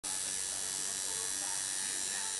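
Coil tattoo machine buzzing steadily while inking skin, a thin high-pitched electric buzz at an even level.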